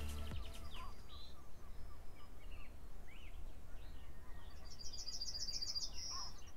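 Small birds chirping and calling in short separate notes over a steady low outdoor background. Near the end, one bird starts a fast, high trill of rapidly repeated notes.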